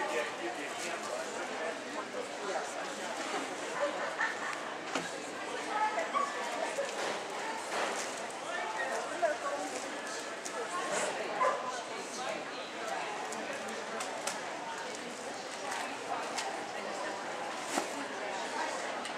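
Background chatter of people talking, with a dog barking a few times.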